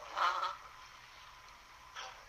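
A brief vocal sound from a person, about half a second long near the start, then only faint steady recording hiss.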